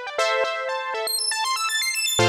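4OSC software synth playing a fast arpeggio of short, stepping notes, driven by Reason's Dual Arpeggio player; the note pattern changes about a fifth of a second in as a new arpeggio patch loads.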